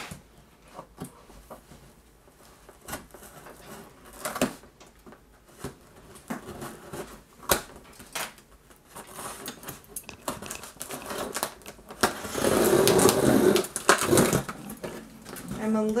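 Long cardboard shipping box handled on a wooden table: scattered light knocks and scrapes of cardboard. About twelve seconds in comes a loud, dense ripping noise lasting about two seconds as the packing tape along the box's seam is opened.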